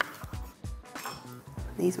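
Chef's knife cutting through button mushrooms onto a wooden chopping board: a sharp knock at the start, then soft, scattered taps, over quiet background music.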